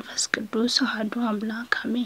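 A single voice reciting a prayer aloud in quick syllables at a fairly even pitch, stopping at the end.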